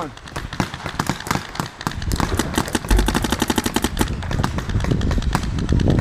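Paintball markers firing strings of shots. The fastest is an even, rapid string about two seconds in, and more scattered shots and short strings follow.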